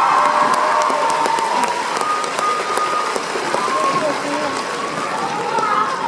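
Audience applauding, with high-pitched voices calling out over a haze of scattered claps.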